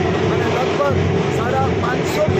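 A man speaking, his voice over a steady, loud background noise.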